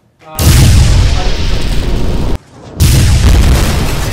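Two loud booming blast sound effects from a video-effects app, one after the other. The first cuts off abruptly after about two seconds, and the second starts under half a second later and rumbles on.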